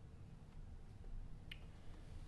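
Quiet room tone with a low steady hum, and one short sharp click about a second and a half in.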